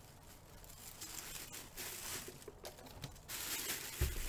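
Plastic wrapping crinkling and rustling as a full-size football helmet is pulled out of its packaging, growing louder in the last second.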